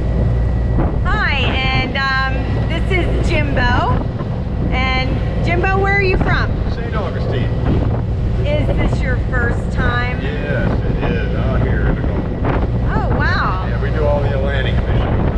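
A man talking over the steady low rumble of a large fishing party boat under way, with wind buffeting the microphone.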